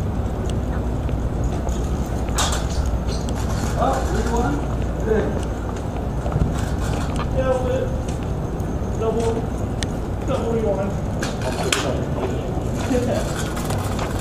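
Indistinct, scattered voices over a steady low rumble on the microphone, with a few sharp clicks.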